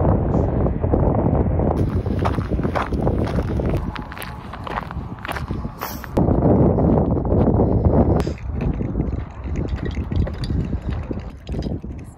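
Wind buffeting the microphone: a loud, uneven rumble that swells and drops in gusts, strongest from about six to eight seconds in.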